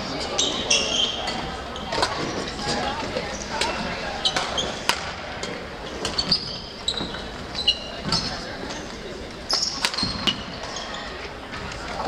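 Badminton play on several courts in a large gym: sharp racket-on-shuttlecock hits and short, high squeaks of court shoes on the wooden floor, scattered irregularly, over a murmur of voices.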